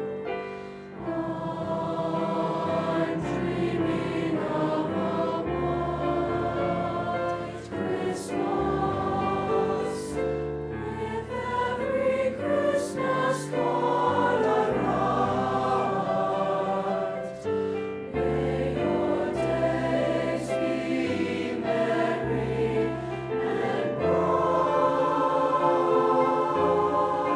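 Mixed high school choir of girls and boys singing in sustained chords, with crisp 's' consonants standing out a few times; the singing grows louder near the end.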